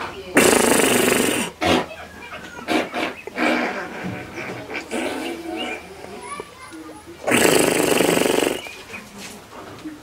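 Rusty sheet-metal door being pounded rapidly, in two rattling bursts about a second long each, one near the start and one near the end, with voices between them.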